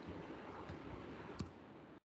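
A few light clicks from a computer keyboard or mouse over a faint steady hiss, the sharpest about one and a half seconds in.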